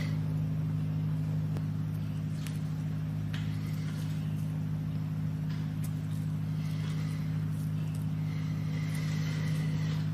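A steady low mechanical hum holding several fixed pitches, with a few faint, brief rustles over it.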